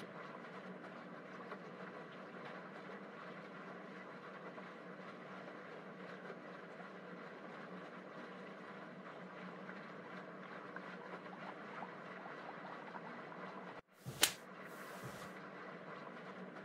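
A steady, faint background noise with a low hum in it. About fourteen seconds in it breaks off for a moment and returns with a sharp click and a brief hiss.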